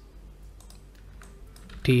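Faint, scattered clicks from a computer mouse and keyboard.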